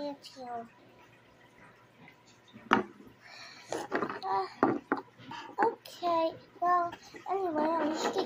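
A sharp click of plastic Lego bricks being handled about three seconds in, followed by a child's voice speaking or mumbling indistinctly, mixed with smaller brick clicks.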